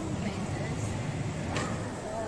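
Indoor background noise: a steady low rumble with faint voices, and a single sharp knock about one and a half seconds in.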